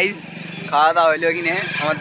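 A motorcycle engine runs steadily with a fast low pulse, under a young man's loud calling voice that starts about a second in.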